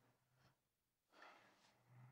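Near silence: quiet room tone with a faint low hum and a faint soft noise about a second in.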